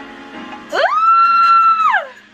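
A woman's high-pitched squealed "ooh!": it swoops up, holds one high note for about a second, then slides back down. Background music plays faintly underneath.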